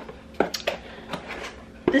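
A few light taps and rustles of a cardboard box and a paper insert being handled.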